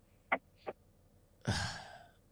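A person's breathy, sigh-like 'uh' about one and a half seconds in, fading out. Two brief faint ticks come before it.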